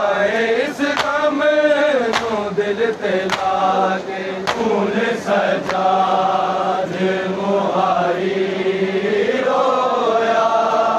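A group of men chanting a Shia noha (mourning lament) in long, drawn-out notes that bend in pitch. For the first half, sharp hand slaps on bare chests (matam) land roughly once a second.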